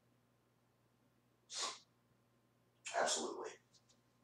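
A man's voice in a small room: one short, sharp, breathy burst about a second and a half in, then a brief wordless voiced sound a little after the three-second mark.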